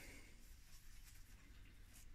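Near silence: faint room tone with light rustling.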